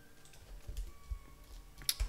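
A few sparse, faint computer keyboard keystrokes, with one sharper key click near the end.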